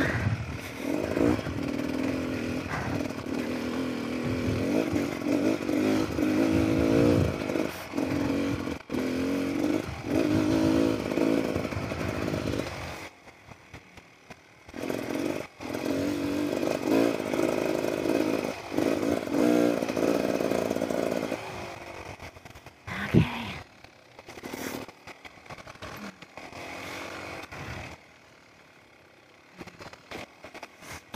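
Beta Xtrainer 300 two-stroke dirt bike engine on the move, revs rising and falling with the throttle. About halfway through the engine sound drops away for a couple of seconds and then picks up again. It falls off for the last third, broken by one short loud burst.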